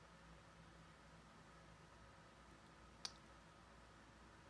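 Near silence: faint room tone, with one short, sharp click about three seconds in.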